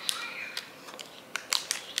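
Snack-bar wrapper crinkling in the hands, a few short sharp crackles, while someone bites into a soft refrigerated protein bar and chews.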